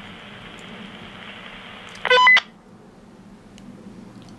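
Two-way radio hissing with open-channel static, then a short, loud multi-tone beep about two seconds in. After the beep the static cuts off, the end-of-transmission tone as the far end lets go of the talk button.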